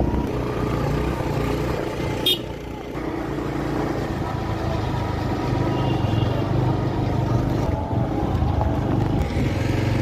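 Motor vehicle engine running steadily while travelling along a rough dirt road, with a single sharp click a little over two seconds in.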